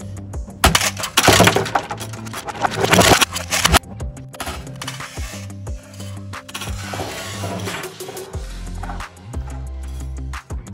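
Background music with a steady beat. Near the start comes a loud crash and clatter as a plastic toy monster truck slams into a plastic box and scatters the plastic toy bones inside it.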